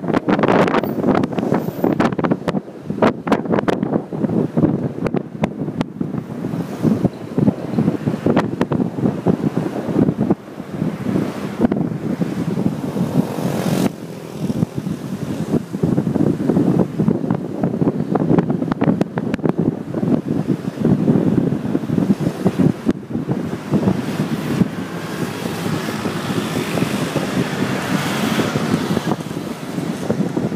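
Wind buffeting the microphone of a moving vehicle, an uneven gusting rush over dull road and engine noise.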